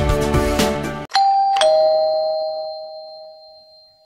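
Background music that cuts off about a second in, followed by a two-note doorbell-style 'ding-dong' chime: a higher tone and then a lower one half a second later, both ringing on and fading away slowly.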